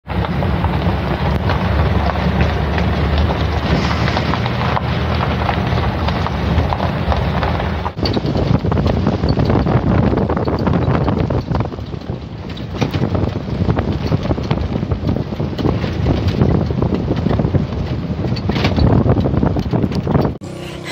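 Loud, steady wind noise on the microphone with a heavy low rumble, as when filming from a moving vehicle. The sound changes abruptly about eight seconds in.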